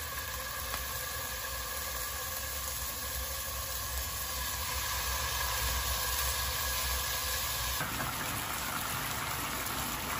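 Pork patties sizzling in hot oil in a nonstick pan, over a steady hum. About eight seconds in, the sound changes to a denser bubbling hiss as the patties simmer in water and dark soy sauce.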